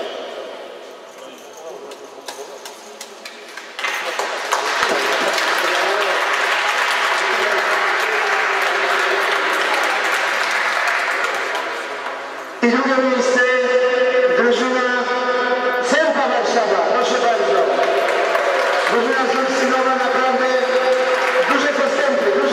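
Applause starting about four seconds in and running for several seconds. It breaks off abruptly into a loud group of voices holding pitched, sustained sounds, like chanting or cheering.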